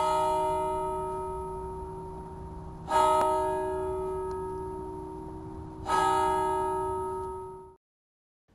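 A bell struck three times, about three seconds apart, each stroke ringing on and slowly fading; the last ring is cut off short.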